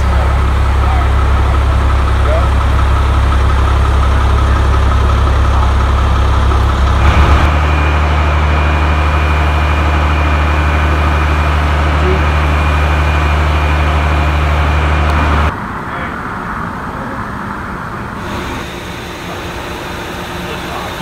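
Steady, loud low hum of an idling vehicle engine, its pitch shifting slightly about seven seconds in. About fifteen seconds in it drops to a quieter, steadier idle hum.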